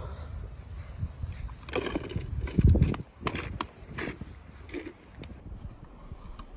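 Wind rumbling on the phone microphone, with a stronger gust about two and a half seconds in. A few knocks and rustles in the middle.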